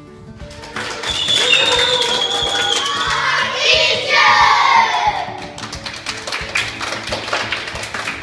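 High-pitched cheering and shouting from a crowd of children over background music, giving way to hand clapping from about five seconds in.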